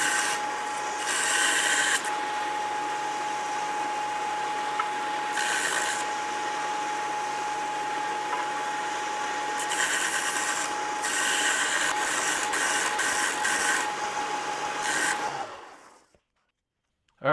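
Bench belt sander running with a steady whine while the end of a quarter-inch steel flat bar is ground to a 30-degree bevel. There are several passes, each contact adding a harsher grinding noise. The sander stops near the end.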